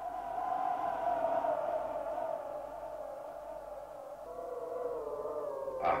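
Howling wind sound effect: a wavering, whistling tone that rises a little in the first second, then slowly sinks in pitch.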